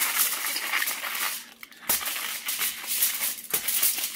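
Regular aluminium foil crinkling and crackling as two layers are crimped and folded tight to seal a foil-meal packet, with a short break about a second and a half in.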